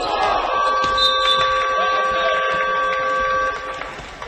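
Basketball scoreboard buzzer sounding a steady, loud multi-tone blare for about three seconds as the game clock runs out, marking the end of the period. It stops abruptly near the end.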